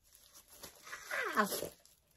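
A woman's voice lets out one drawn-out 'ah' about a second in, falling in pitch, a pleased exclamation.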